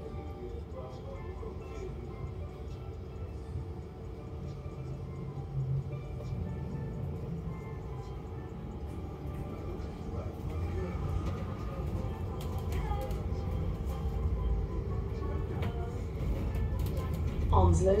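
Inside a double-decker bus: a low engine and road rumble that grows steadily louder as the bus gets moving and gathers speed.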